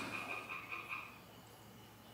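Faint background ambience in a pause between lines, with a thin high steady call that fades out over the first second or so.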